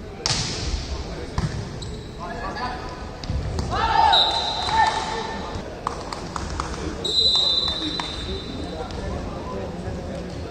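Indoor volleyball rally: the ball is struck with sharp smacks several times while players shout. A referee's whistle gives a long steady blast about seven seconds in.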